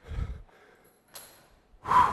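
A man breathing hard from exertion at the end of a set of resistance-band front raises. A low huff comes first, then a short sharp breath about a second in, then a loud 'whew' exhale near the end.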